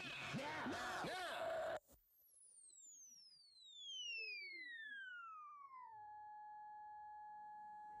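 Electronic effect sound: a dense, warbling wash of rising and falling sweeps cuts off abruptly, then a pure electronic tone glides steadily down in pitch over about four seconds and settles into one steady tone.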